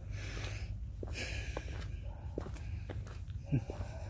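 A man breathing deeply in the open air, two audible breaths about a second apart, with faint ticks and rustles over a steady low rumble, then a short 'hmm' near the end.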